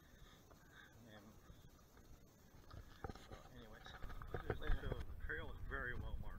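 A man speaking indistinctly, faint at first and clearer from about three seconds in. A low rumble on the microphone grows louder from about four seconds in.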